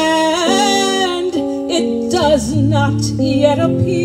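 A woman singing a slow gospel solo into a microphone: she glides up into a long held note at the start, then sings shorter phrases with a wide vibrato. Sustained keyboard chords and a low bass line accompany her.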